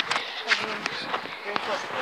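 Phone held in the hand and moved about: a scatter of small knocks and rustles from the handling, about half a dozen across two seconds.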